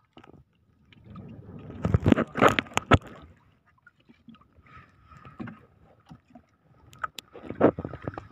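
Handling noise in a small wooden fishing boat as buya-buya hook-and-line floats are set out: irregular bursts of scraping and splashing with a few sharp knocks on the hull, loudest about two to three seconds in and again near the end.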